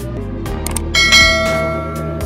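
Light background music, over which a bright bell 'ding' sound effect strikes about a second in and rings on as it fades: the notification-bell chime of a subscribe animation.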